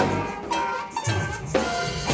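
Live band music from a large ensemble: drum kit and hand percussion over electric guitars, bass and other pitched instruments. The sound thins for about a second midway, then the full band comes back in.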